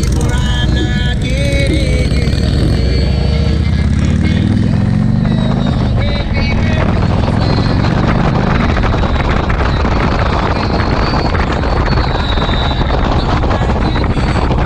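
Motorcycle engine accelerating, its pitch rising for about two seconds from about four seconds in. It then gives way to steady riding noise: engine and wind rush on the bike-mounted microphone. Music plays over the first few seconds.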